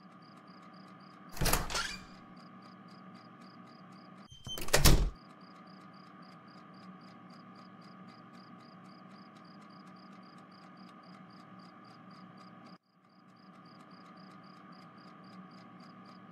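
Two short door sound effects about three seconds apart, over a faint steady background with a high chirp repeating about three to four times a second. The background cuts out briefly near the end.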